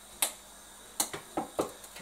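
About six short, sharp clicks and taps, spread through two seconds: sliced leeks being tipped and scraped off a plate into a pan on the stove.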